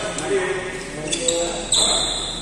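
Badminton rally: a few sharp racket strikes on the shuttlecock in quick succession, with players' voices calling on court.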